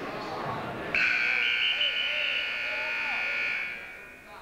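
Gym timing buzzer sounding one long steady blast, starting about a second in and cutting off sharply near the end, stopping the wrestling.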